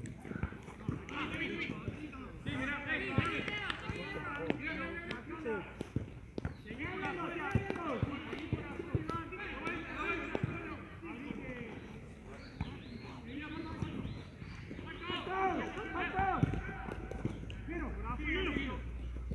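Indistinct voices of several people talking throughout, with occasional sharp thumps of a football being kicked on the pitch.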